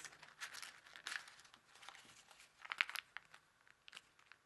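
Kami origami paper crinkling and rustling as it is folded and creased by hand. The rustles come in short spells, and the loudest is about three seconds in.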